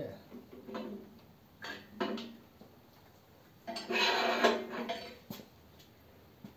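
Metal knocks and a louder scraping clatter as a flathead V8 engine block, crankshaft still in it, is tipped over onto its end on a stand: a few short knocks early, then about a second of clattering around four seconds in.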